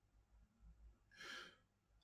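Near silence, with one short, faint breath from a man a little over a second in.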